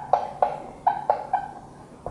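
Felt-tip marker squeaking on a whiteboard as words are written: about six short, high squeaks in quick succession, stopping about a second and a half in.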